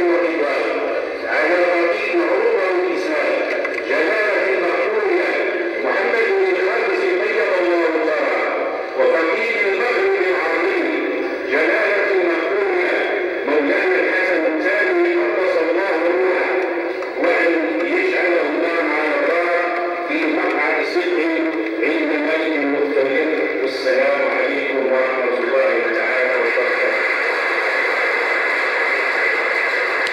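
A man's voice chanting a melodic recitation into a microphone, with long held notes that slowly rise and fall.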